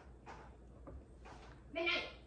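A household pet gives one short, high-pitched cry near the end, trying to get in at a screen door.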